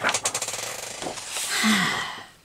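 Large sheets of scrapbook paper being handled and pulled from a pile: a fast rattle of paper in the first second, then a steadier rustle.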